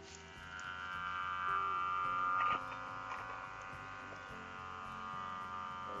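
A steady buzzing hum, swelling louder over the first two seconds or so and then dropping back suddenly.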